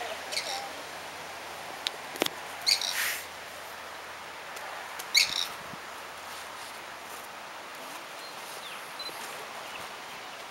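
Short, high-pitched bird chirps, three brief calls about half a second, three seconds and five seconds in, over a steady outdoor hiss. A couple of sharp clicks come around two seconds in.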